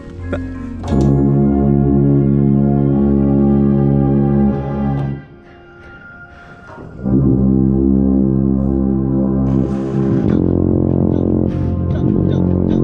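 Contrabass bugle playing long held low notes with the drum corps brass line. One chord is held for about four seconds starting a second in, there is a break of about two seconds, and sustained playing resumes about seven seconds in.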